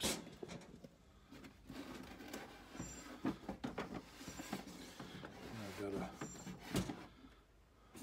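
Handling noise: scattered light clicks and rubbing as the camera and a plastic circuit breaker are moved about, with a brief muttered word around six seconds in and a sharp click just before seven seconds.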